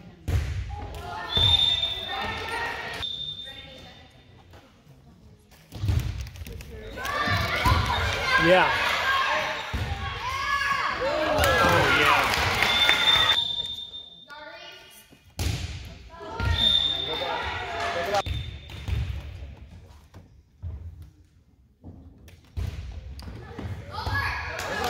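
Volleyball game echoing in a gymnasium: a referee's whistle blows briefly three times. The ball is struck and bounces on the wooden floor, and spectators and players shout and cheer, loudest in the middle.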